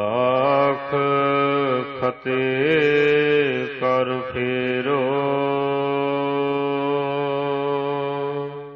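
A single man's voice chanting a drawn-out line of Gurbani, the Sikh scripture. The pitch wavers and bends through ornamented turns with two brief breaks, then settles into one long, steady held note for the last three seconds.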